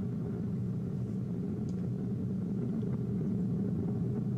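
Distant roar of an Ariane 5 rocket climbing with its solid rocket boosters still burning: a steady low rumble.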